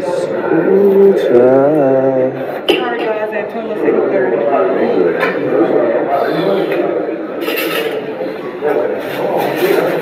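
Indistinct voices talking in a large room, not picked out as words; about a second in, one voice is drawn out with a wavering pitch.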